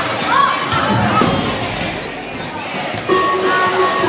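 Music over a gymnasium's sound system mixed with echoing voices and chatter in the hall, with a few sharp smacks of volleyballs being hit. The music is quieter in the middle and comes back with held notes about three seconds in.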